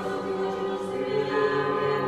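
Orthodox church choir singing slow, sustained chords.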